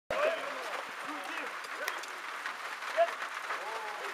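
Several voices of players and touchline spectators calling out across an open football pitch, short shouts overlapping over a steady haze of background noise, with one louder call about three seconds in.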